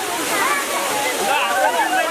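A spray of water gushing and splashing down onto people, with many voices of a crowd shouting and laughing over it.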